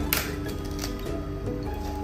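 Background music with steady held tones. Just after the start, a short crisp snip as a plastic sachet of hotpot base is cut open with scissors, followed by a few faint rustles of the wrapper.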